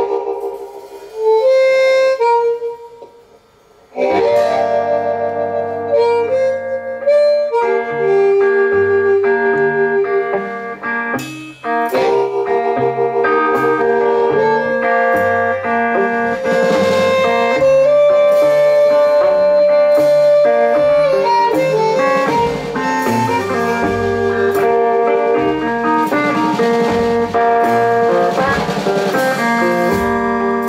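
Live hill country blues instrumental intro on electric guitar and drum kit, with long held lead notes over a steady beat. A short opening phrase and a brief drop in level, then the full groove from about four seconds in.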